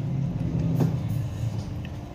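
A low rumble that swells and then fades, with a single faint click a little under a second in.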